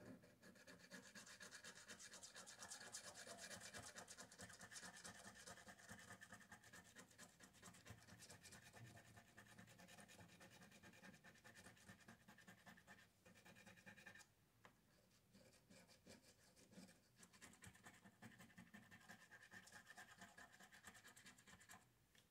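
Faint, steady rasping of a coin scratching the coating off a scratch-off lottery ticket on a table, with a brief pause about two-thirds of the way through before the scratching resumes.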